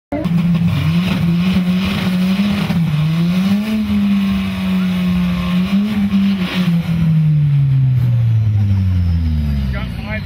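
Hybrid-turbo Ford Fiesta ST four-cylinder held at high revs during a front-wheel burnout, the revs wavering up and down while the tyres spin. Over the last three seconds the revs fall steadily.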